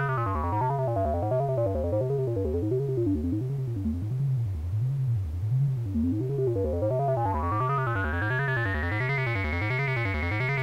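DIY analogue modular synth playing a repeating bass-note sequence, about two notes a second, from a Baby 8 sequencer through an MS-20-style resonant low-pass filter. The cutoff is swept down until the sound turns dull around the middle, then swept back up, with the resonance giving a whistle as it sweeps.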